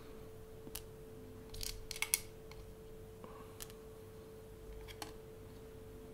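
Small metal parts (pins and springs) being set down one by one on a work mat: a scattering of light clicks and taps, the loudest about two seconds in, over a faint steady hum.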